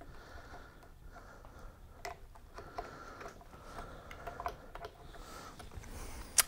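Faint, scattered small clicks and taps as a humbucker pickup is handled and set down into an electric guitar's pickup cavity onto a brass mounting bar.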